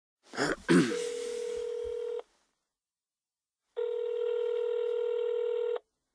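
Telephone ringback tone heard through the phone line: a steady buzzing tone rings twice, about two seconds each, with a pause between. It comes just after a short rustling noise.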